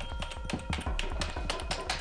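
Computer keyboard typing: a quick, irregular run of key clicks over low background music.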